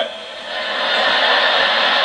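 A large audience laughing after a punchline, the crowd noise building up about half a second in and then holding steady.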